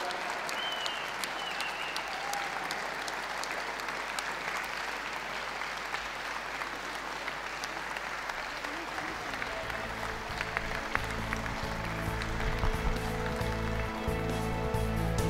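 Audience applauding steadily. About nine seconds in, music with a steady bass line comes in under the applause.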